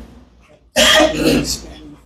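A person coughing and clearing their throat: a sudden loud cough about three-quarters of a second in, followed by a couple of weaker coughs that fade within a second.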